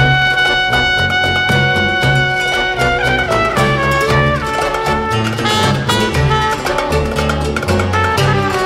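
Instrumental passage of a klezmer band's song with no singing: the melody holds one long note for about three seconds, then moves through shorter notes over a pulsing bass line.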